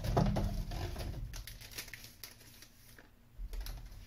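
Rustling and small, quick clicks of a packet of biscuit sticks being handled with gloved hands, busiest in the first second, with another short flurry about three and a half seconds in.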